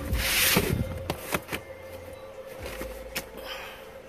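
Fabric kayak carry bag rubbing and sliding against the carpeted cargo floor of an SUV as it is pushed into place: a rustle for the first second or so, then a few light knocks.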